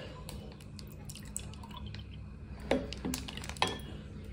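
Juice poured from a plastic bottle into a glass tumbler, a faint continuous splashing as the glass fills, with a few light clicks in the last second and a half.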